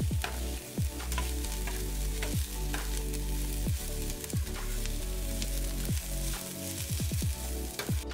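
Chopped onions sizzling in oil in a stainless steel pan, being sautéed until translucent, while a metal spatula stirs them, with repeated scrapes and clicks against the pan.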